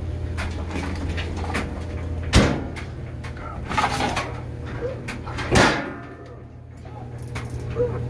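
Handling sounds of laundry being loaded into a top-loading washing machine: two loud knocks, about two and a half and five and a half seconds in, with smaller clicks and rustles between them, over a steady low hum that dips briefly near the end.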